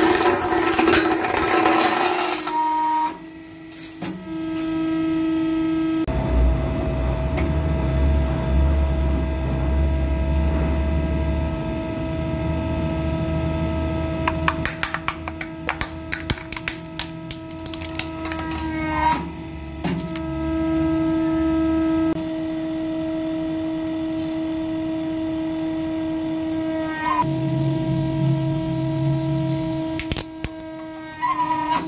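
Hydraulic press running with a steady hum as its ram crushes objects. Glass crunches and cracks at the start, then plastic toy vehicles creak and crack under the plate, with a run of sharp cracks in the middle.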